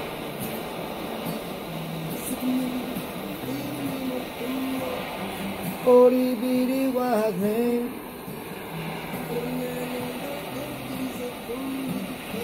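Handheld torch flame hissing steadily as it heats the quartz banger of a dab rig, warming the reclaim inside. Background music plays over it.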